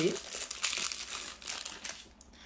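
Thin plastic packaging crinkling as it is handled: a dense run of small crackles that thins out and grows quieter toward the end.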